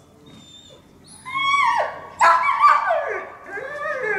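Police service dog whining and yelping in high cries that fall in pitch: one long cry about a second in, then a louder run of cries from just after two seconds.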